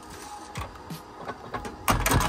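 A door being opened by hand: a few faint clicks and rattles of the latch and door, then a loud clunk just before the end.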